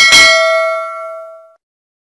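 Notification-bell sound effect of a subscribe-button animation: a single bell ding, struck once, ringing out and dying away within about a second and a half.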